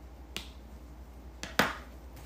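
Three sharp snap-like clicks close to the microphone: a small one early, a small one just under a second and a half in, and a much louder one just after it with a brief ring.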